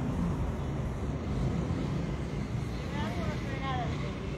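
Steady low rumble of street traffic and engines, with a distant voice heard near the end.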